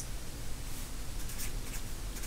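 Felt-tip marker writing on paper: a few faint, short strokes about a second in, over a steady low hum.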